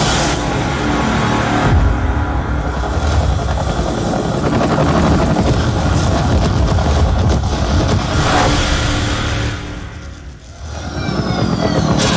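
Action-movie trailer soundtrack: heavy engine and vehicle sound effects mixed with dramatic music. The sound drops away sharply about ten seconds in, then swells back up.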